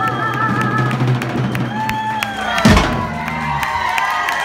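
Live band playing, with drum kit and bass carrying a steady beat. A held sung note trails off right at the start, and a loud low thud falls in pitch a little under three seconds in.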